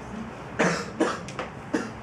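A woman coughing three times into a handheld microphone, with sharp, loud coughs about half a second apart.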